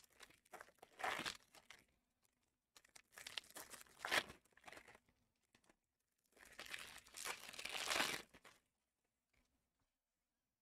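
Trading card pack wrappers being torn open and crinkled, in three bursts of a second or two each.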